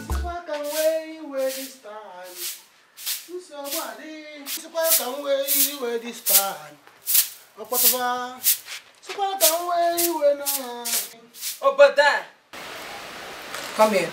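A voice singing a tune without clear words, over brisk, regular strokes of a broom scraping a concrete floor, about two a second.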